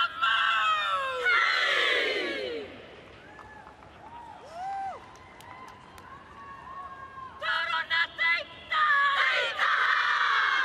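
Black Ferns women's rugby team performing a haka: many women's voices chanting and shouting in unison. The shouts are loud in the first couple of seconds and again from about seven seconds in, with quieter single calls between.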